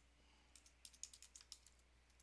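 Faint typing on a computer keyboard: a quick run of keystrokes starting about half a second in.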